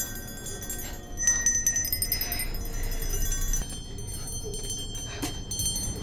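Several small metal grave bells on strings ringing at once in overlapping jangles, busiest from about a second in to past the middle, over a low rumble. These are coffin bells, the signal of someone buried alive below.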